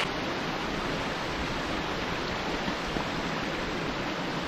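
Shallow mountain stream running over stones and boulders: a steady rushing of water.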